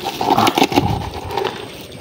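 Nylon trap net being shaken and pulled over a plastic basin as small shrimp are emptied into it: a busy rustle of many small clicks and patters, loudest in the first second and a half.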